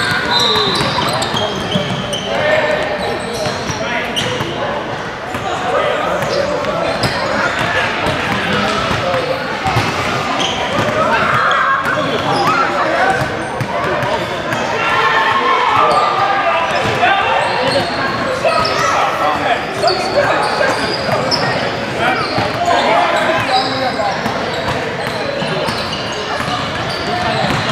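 Basketballs bouncing on a hardwood gym floor, with short knocks scattered throughout, amid many players' overlapping chatter, echoing in a large gym hall.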